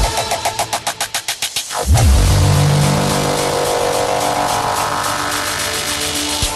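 Frenchcore/hardcore electronic music: a fast drum roll that speeds up, a brief drop-out, then a heavy kick about two seconds in, followed by a sustained distorted low drone.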